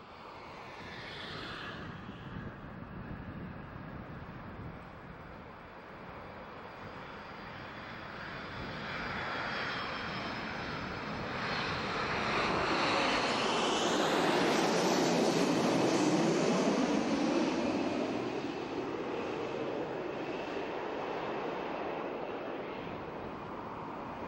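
An aircraft passing overhead: a long rushing engine noise that swells to its loudest about fifteen seconds in, then slowly fades.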